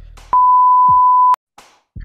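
A single loud, steady electronic beep about a second long, one pure high tone that starts and stops abruptly, of the kind added in editing as a bleep.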